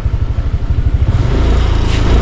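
A low engine rumble with a rapid regular pulse, growing louder about a second in.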